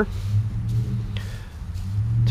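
Faint rustling of dry leaves as a gloved hand brushes through the leaf layer on top of a worm bin, over a steady low hum.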